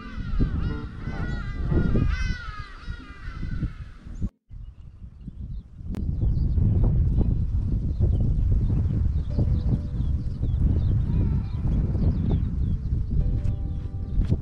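Birds calling in a rapid run of short, honking, goose-like calls for about the first four seconds. After a brief break, a steady low rumble of wind on the microphone takes over, with faint bird chirps above it.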